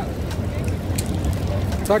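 Busy outdoor ambience: a steady low rumble with faint voices in the background, and a man's voice starting right at the end.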